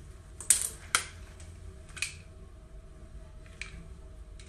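A comb being run through freshly flat-ironed bangs, giving a few short, sharp scrapes and clicks: two close together about half a second and one second in, another about two seconds in, and a faint one near the end.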